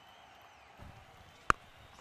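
A single sharp crack of a cricket bat striking the ball, about one and a half seconds in, over faint ground ambience.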